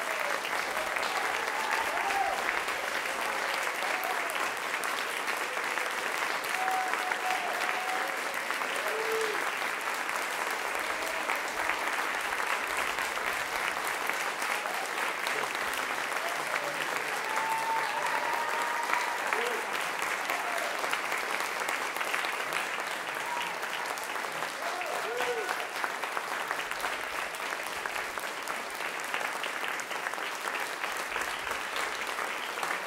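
Theatre audience applauding steadily, dense clapping throughout, with a few voices calling out now and then among it.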